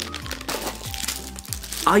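Clear plastic packaging bag crinkling as it is handled, over steady background music; speech begins near the end.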